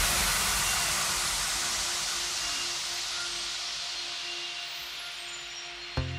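A white-noise wash in an electronic dance music mix, fading steadily and growing duller as its high end falls away, with faint held synth tones underneath. A new beat starts right at the end.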